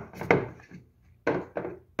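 Plastic knocking and scraping as a 20-volt lithium-ion battery pack is slid and pressed onto its charging base, with one sharper knock just past the middle.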